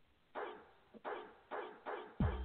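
Dog barking, four short barks in quick succession, the first the longest and loudest: a recorded sound effect in a radio advert for a pet grooming salon.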